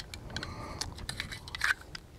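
A few light metallic clicks of a Rock Island Armory 1911 pistol being handled in the hands just after firing.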